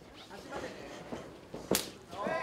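One sharp smack of a kickboxing strike landing, about three-quarters of the way in, over faint voices from around the ring.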